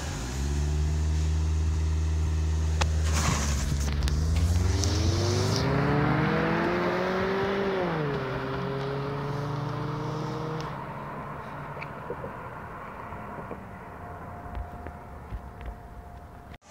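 A car engine pulling away: a steady note for a few seconds, then revs climbing. They drop sharply at a gear change about eight seconds in, hold briefly, then fade out as the car leaves.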